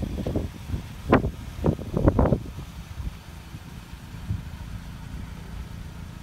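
The 2006 Pontiac Solstice's four-cylinder engine idling steadily as a low hum, with a few brief knocks or bumps in the first couple of seconds.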